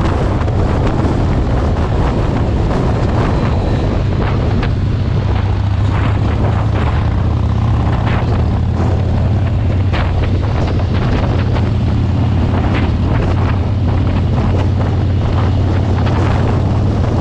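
Harley-Davidson Roadster's 1202 cc air-cooled V-twin running at a steady highway cruise, a low continuous drone, heard from the rider's seat with wind rushing and buffeting over the microphone.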